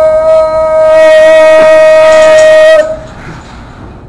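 A man's voice holding one long, loud, high note at a steady pitch, which breaks off about three seconds in.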